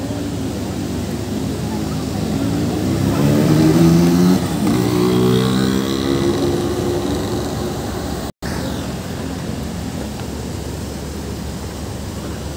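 Busy city street traffic, with one vehicle's engine accelerating past: its pitch climbs, drops about four seconds in, then carries on and fades out over the next few seconds.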